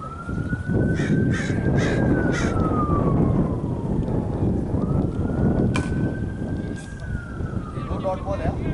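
A distant emergency-vehicle siren wailing, its pitch rising slowly and then falling, in cycles of about four to five seconds, over wind rumbling on the microphone.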